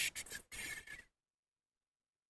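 A man's voice: the hissing end of a spoken word, then a short breath about half a second in. It cuts off to dead silence just after a second in.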